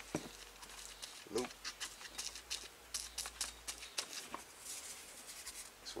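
Hook-and-loop backing crackling and rasping as a soft interface pad and sanding disc are pressed and smoothed onto a dual-action sander's pad by hand: a run of quick, sharp clicks and scratches with the sander switched off.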